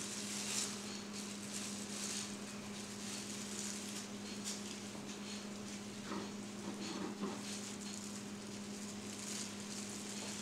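A long slicing knife drawn back and forth through a smoked boneless leg of lamb on a wooden cutting board, making faint soft scraping strokes, with a steady low hum underneath.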